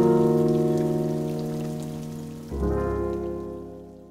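The closing of a song: a held chord slowly fading, then a last chord struck about two and a half seconds in that rings and fades out, over a faint crackling hiss.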